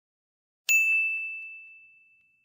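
A single high-pitched ding chime sound effect, struck once about two-thirds of a second in and ringing out as it fades away.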